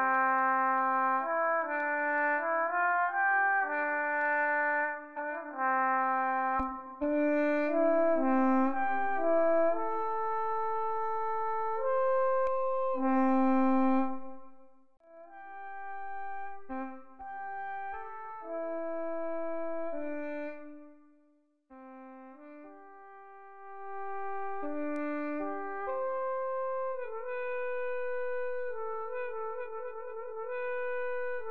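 Sampled-and-modelled solo French horn (Xtant Audio Model Brass virtual instrument) played from a keyboard: a slow melodic line of held notes, some overlapping into chords. It dies away about halfway through, resumes, and breaks off briefly again about two-thirds of the way in.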